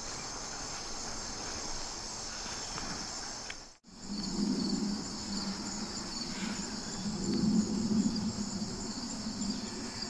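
Steady outdoor insect chorus of crickets chirping in a continuous high trill. It cuts out briefly a little under four seconds in. After the break, a low uneven rumble runs under it.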